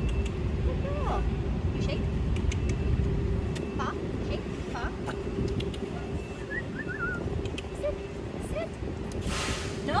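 Steady low mechanical rumble with a constant hum, with a few short, faint chirping glides here and there and a brief hiss about nine seconds in.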